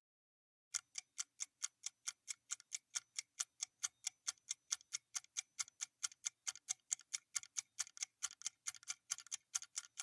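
Ticking-clock sound effect of a quiz countdown timer: sharp, even ticks at about three a second, coming closer together in the last couple of seconds as the time runs out.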